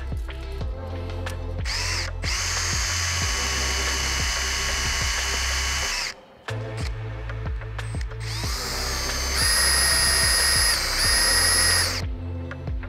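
Cordless drill boring a two-inch Forstner bit through a board, in two runs. Each run spins up with a rising whine and then holds a steady pitch: the first lasts about four seconds, and the second starts about eight seconds in and briefly dips near its end. Background music plays underneath.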